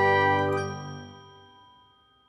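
The last chord of an outro jingle for an animated logo end card rings out and fades away over about a second and a half.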